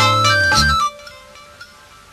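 Music from a 1988 Malayalam chorus song: steady held instrumental chords that break off a little under a second in, followed by a brief quieter gap.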